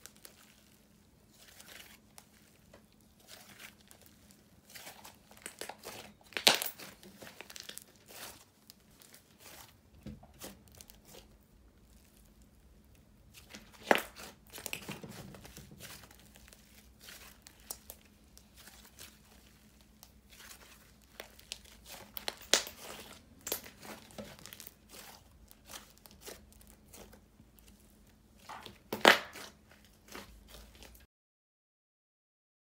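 Orange clear-and-clay fizz slime being squished, folded and stretched by hand, giving scattered soft crackles and pops, with a few louder ones.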